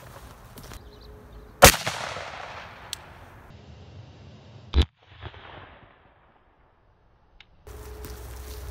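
A single 5.56 rifle shot, loud and sharp, about a second and a half in, with its echo fading over the next two seconds. A second sharp crack follows about three seconds later.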